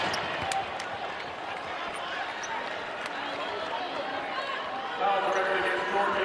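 Live basketball game sound in an arena: the ball being dribbled and sneakers squeaking on the hardwood court over crowd noise, with voices getting louder about five seconds in.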